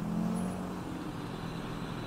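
A car driving past slowly, its engine a low, faint hum that fades away.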